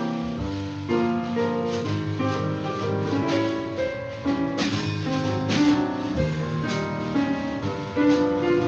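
Jazz trio led by piano playing a jazz waltz built from sonified X-ray data of a star, with piano notes over steady drum and cymbal hits.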